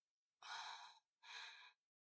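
Two short, faint breaths from a woman, one about half a second in and a second shorter one past the middle, with near silence around them.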